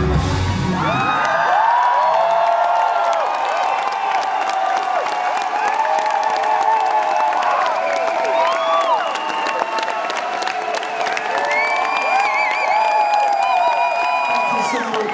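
A rock band's live song stops about a second in, and a concert crowd takes over, cheering and screaming. Long shrill whistles sound above the crowd near the end.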